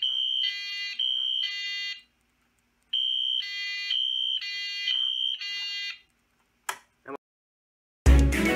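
Fire alarm sounding the three-pulse temporal pattern, set off by the pull station's test switch: a high steady tone with three buzzy horn pulses, a short pause, then another cycle of three. It cuts off about six seconds in, and two short clicks follow about a second later.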